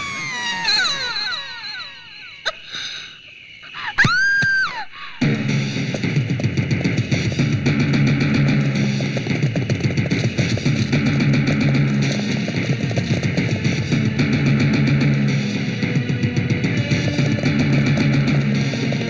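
Action-film background score: falling, sweeping tones at first and a short rising-and-falling tone about four seconds in, then a fast, driving beat from about five seconds on.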